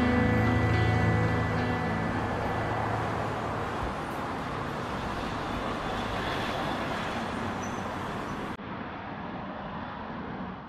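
Background music ending about two seconds in, giving way to a steady rush of city traffic noise, with a sudden change in sound near the end.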